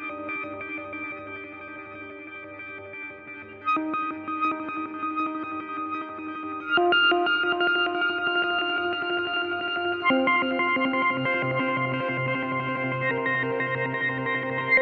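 Sampled clarinet pad from the Clarinet Textures virtual instrument ('Aeons Infinite Pad' preset), layering fast-vibrato clarinet with grace-note clarinet samples. It plays sustained chords that change about every three seconds, and a low note joins about eleven seconds in.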